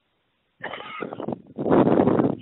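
A man clearing his throat close to the microphone: a rough, noisy sound that starts a little over half a second in and grows loudest near the end, just before he begins chanting.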